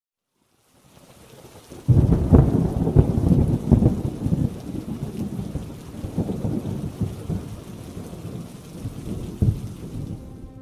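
Thunderstorm: a steady rain hiss fades in, then a sudden thunderclap breaks about two seconds in. The thunder rumbles and crackles on over the rain, slowly dying away.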